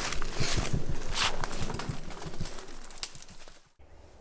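Footsteps brushing and crunching through woodland undergrowth, with birds calling, the sound fading away toward the end.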